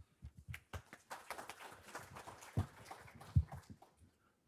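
A small audience applauding: scattered claps that thicken into brief applause, then die away just before the end. Two low thumps stand out near the end.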